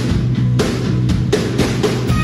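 Rock band playing live: a drum kit with bass drum and cymbal hits over electric guitars and bass, played loud and steady.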